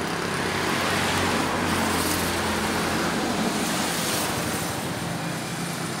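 Road traffic noise: a vehicle going by, its sound swelling and then slowly fading, over a steady low engine hum.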